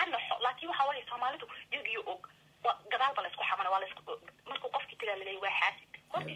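A person talking over a telephone line, the voice thin and narrow, with the top end cut away.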